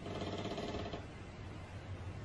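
Quiet pause filled by a steady low background hum, with a faint buzzing tone for about the first second.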